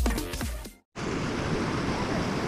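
Electronic background music with a beat fades and cuts off just under a second in. After a brief gap, a steady rushing noise of a mountain stream follows.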